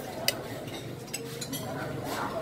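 A sharp clink of plates or cutlery about a quarter second in, then a few lighter clinks, over low background chatter.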